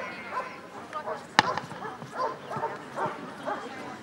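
A dog barking steadily at a protection-suited helper standing at the blind, two to three barks a second: the hold-and-bark stage of the exercise. A single sharp crack sounds about a second and a half in.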